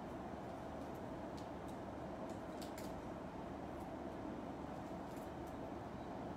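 Faint, scattered small clicks of the metal and plastic wing parts of a Metal Build Freedom Gundam figure being handled and fitted, over a steady low room hum.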